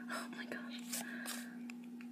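Soft whispering and the light slide of trading cards being flipped through by hand, over a steady low hum.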